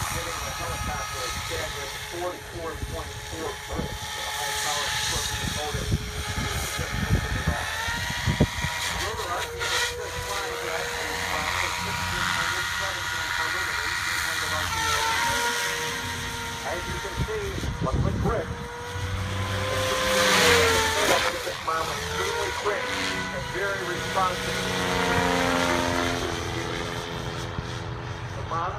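SAB Goblin 700 electric RC helicopter, its Scorpion brushless motor and rotor blades spinning with a steady whine. The pitch steps up a couple of times, then dips and rises again as the helicopter lifts off and climbs.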